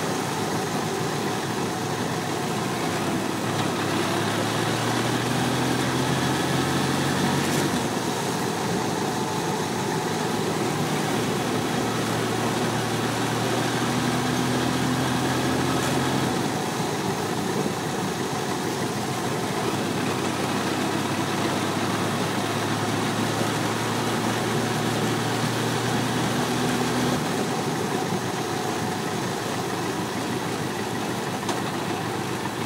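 Motorcycle engine running under way, heard with a steady rushing noise; its low note steps up and down several times as the speed changes.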